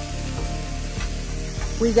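Vegetables sizzling on a Blackstone flat-top griddle, with light, irregular clicks of a metal spatula working against the cooking surface.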